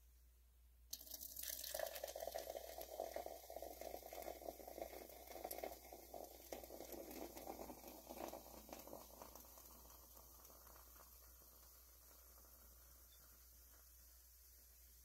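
Carbonated soda poured from a can into a glass, splashing and fizzing. It starts suddenly about a second in and fades away over the last few seconds as the glass fills with foam.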